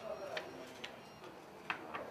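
Four short, sharp clicks, two in the first second and two close together near the end, over faint voices.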